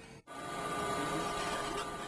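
Steady mechanical hum with a few faint steady whine tones, from machinery or ground equipment. It starts after a brief dropout about a quarter second in.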